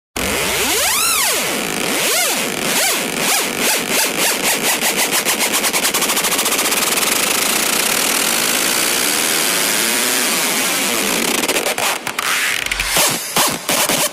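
Intro of a hardstyle track: noisy sound-effect sweeps swooping up and down in pitch, then a pulse that speeds up until it merges into a continuous rush of noise. About twelve seconds in, the rush breaks into chopped rhythmic stabs.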